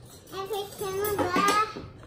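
A young girl's voice singing a short, high-pitched tune, without clear words.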